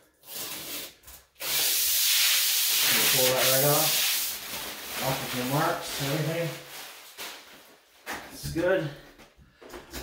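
A long scratchy hiss of about three seconds, starting a little over a second in: rubbing against the plastic tub-surround panel as it is pressed and worked onto the wall.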